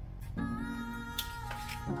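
Background music of held notes that change pitch in steps, with a brief rustle of origami paper being handled a little past the middle.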